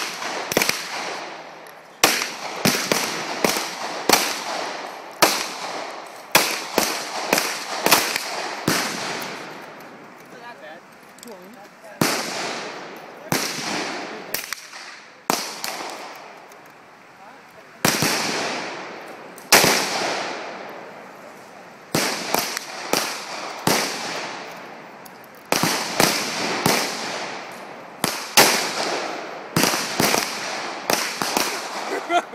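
Gunfire on an outdoor range: dozens of sharp shots at irregular intervals, sometimes several a second, each with a short echoing tail. There are far more shots than a two-shot derringer could fire, so several guns are firing.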